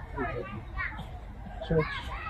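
Speech: a man speaking, with a word near the end, and fainter voices in the background.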